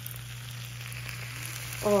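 Hot buffalo sauce sizzling steadily as it is poured onto oven-roasted cauliflower in a cast iron skillet, with a low steady hum underneath.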